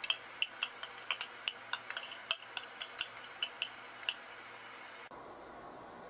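Metal spoon clicking and scraping inside a plastic food processor bowl, knocking out stuck grated cheese: a quick run of light clicks, about four a second, that stops about four seconds in.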